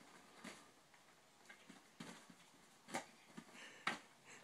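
Faint scattered taps and rustles of a kitten scrambling and pouncing on bedding while playing with a fuzzy ball toy, the sharpest thump just before the end as it leaps.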